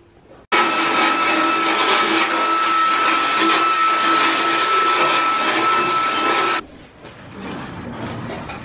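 Motorised equine dental float running steadily with a constant whine as it grinds down a horse's teeth. It starts abruptly about half a second in and stops suddenly near the end.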